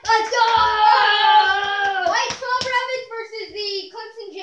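A child's long, high-pitched yell held for about two seconds, its pitch wavering and sliding down, followed by shorter shouts. A few sharp slaps or knocks sound among them.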